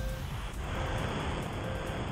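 A steady rushing noise that swells in about half a second in, under faint held music notes.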